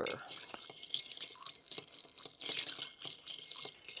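Long bar spoon stirring a cocktail over ice in a glass mixing glass: a steady run of small irregular clinks and ticks as the ice turns against the glass.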